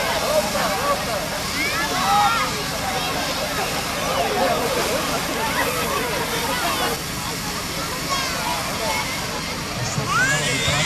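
Steady hiss of a firefighting hose's foam branch pipe spraying foam onto a car, with many voices chattering over it and dipping slightly about seven seconds in.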